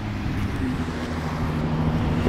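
Road traffic: a steady low engine hum from a vehicle on the road beside the verge.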